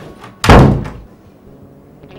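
A white panelled interior door with a lever handle shut hard: a single loud bang about half a second in that dies away within half a second.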